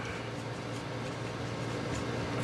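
Steady low hum and hiss of room noise, with no distinct clicks or knocks.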